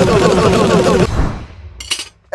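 Cartoon sound effect of a barrage of forks flying in and striking: a loud, dense rapid-fire rattle that stops abruptly about halfway through, followed by a brief faint burst near the end.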